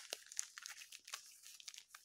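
Faint crinkling of a clear plastic bag full of powdered henna as it is squeezed and turned in the hands: a run of small, scattered crackles.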